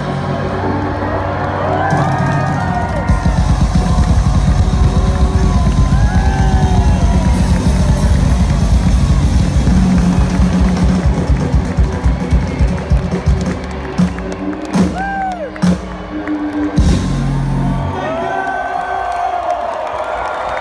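Live dance music through a festival stage PA, heard from within the crowd: a driving drum beat with heavy bass that breaks up into separate hits and gaps about two-thirds of the way through.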